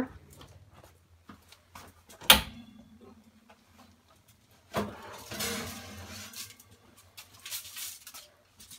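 An oven and a metal baking tray being handled. A sharp knock comes about two seconds in. Near the middle there is another knock, then a second or so of scraping and rustling as the tray is drawn out of the oven, with small clicks around it.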